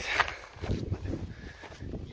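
Footsteps of a person walking up a snowy trail, an uneven series of soft thuds.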